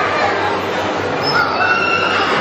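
Crowd chatter in a large echoing hall, with a high, drawn-out call rising out of it a little past halfway through.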